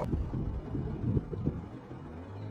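Low, irregular rumble on the camera microphone, with a few faint knocks and no voice.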